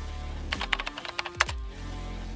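Keyboard typing sound effect: a quick run of about eight clicks in a second, starting about half a second in, over background music with a steady low bass.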